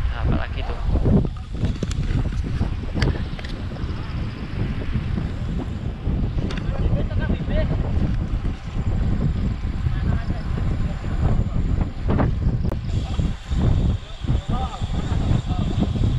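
Wind buffeting the microphone of a camera riding on a moving bicycle: a loud, low rumble that swells and dips unevenly throughout.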